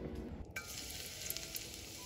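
Hot coconut oil sizzling faintly in a metal wok, an even hiss that starts abruptly about half a second in.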